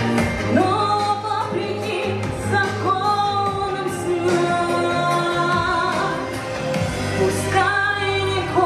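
A woman singing a song into a microphone, amplified, over instrumental backing music.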